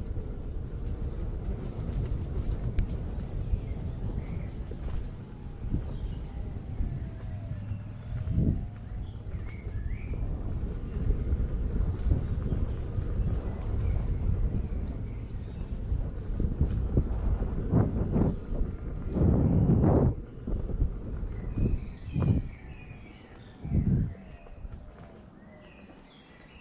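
Steady low rumble of an electric unicycle ridden along a dirt forest trail, with several heavier jolts in the last seconds as it slows. Birds chirp faintly in the background.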